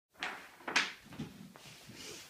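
Two sudden bumps about half a second apart, the second the louder, then a few fainter clicks.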